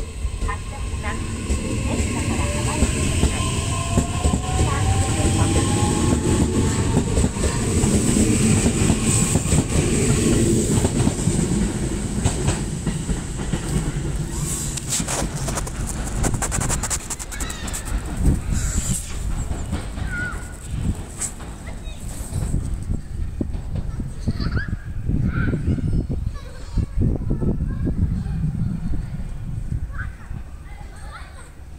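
JR Sagami Line E131-series electric train pulling out of a station: the traction motors whine, rising steadily in pitch as it accelerates over the first several seconds, under a rumble of wheels. About halfway through comes a quick run of wheel clacks over rail joints, and then the sound dies away as the train recedes.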